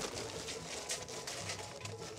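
Kingsford charcoal briquets pouring from a paper bag into a metal chimney starter, falling in a stream of small irregular clatters.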